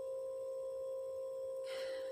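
A steady, unchanging mid-pitched tone, like a constant electronic whine, running in the background, with a soft breath near the end.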